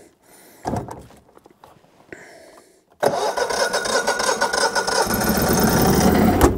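A generator engine being started: a few clicks and a knock, then about halfway through it catches at once and runs steadily, growing louder near the end.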